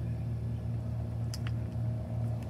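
A steady low mechanical hum, with a couple of faint brief clicks about one and a half seconds in.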